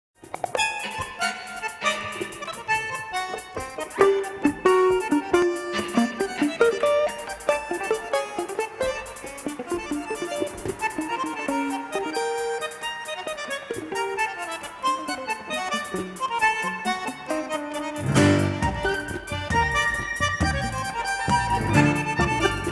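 Live ensemble music led by a bandoneón, with violin, cello and piano, in sharp staccato phrases. About three quarters of the way through, a fuller, deeper passage comes in.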